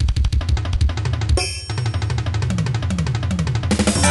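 Instrumental rock music led by a drum kit playing a fast, busy run of hits over bass, with a brief noisy swell about a second and a half in.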